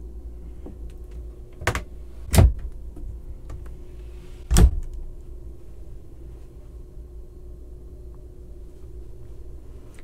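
Wooden closet doors knocking as they are handled and shut: three short knocks, the first at about two seconds, another just after, and the loudest near the middle. A steady low hum runs under them.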